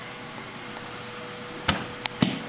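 A single sharp knock near the end, against a faint steady hum of kitchen room tone.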